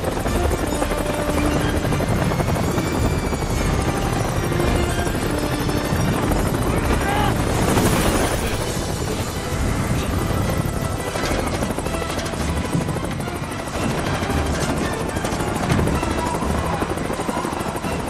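Helicopter rotor beating close by, a dense steady chop that runs throughout, mixed as a film soundtrack.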